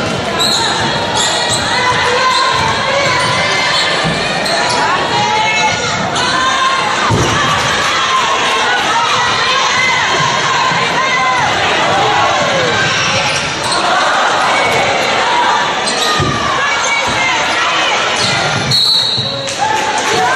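Basketball game sounds in a large echoing gym: a ball bouncing on the hardwood floor and sneakers squeaking in short gliding squeals as players run, over a steady crowd murmur with voices.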